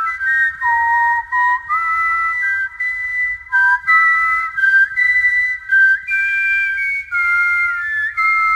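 Several layered whistled parts playing a melody in harmony: a multitracked a cappella whistle arrangement of a film theme, clear high notes stepping from pitch to pitch with short breaths between phrases.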